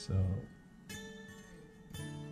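Soft background music with plucked, guitar-like notes held under the scene, a new note sounding about a second in. A man says "so" at the very start.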